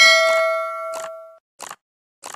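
A bell ding sound effect for the subscribe-button bell being clicked: one struck chime that rings out and fades over about a second and a half, followed by two short clicks.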